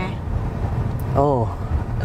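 Steady low rumble of road and drivetrain noise inside the cabin of a moving Hyundai Palisade SUV, with a small click about a second in. A short spoken exclamation comes just after it.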